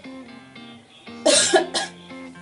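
Soft acoustic guitar background music, cut by a loud, short cough about a second and a quarter in, with a smaller second cough just after.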